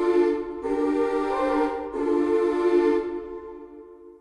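Sampled boys' alto choir in Kontakt singing sustained legato chords on vowel syllables, a new chord starting about half a second in and another about two seconds in, the last one fading out near the end.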